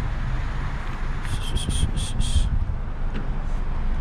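Steady low outdoor rumble, with a quick run of about five short, high chirps about a second and a half in.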